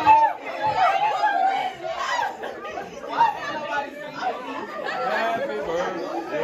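Chatter of a group of students talking over one another in a classroom, with no single clear voice.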